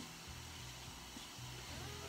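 Faint chewing of a soft cookie with the mouth closed, over a low hum.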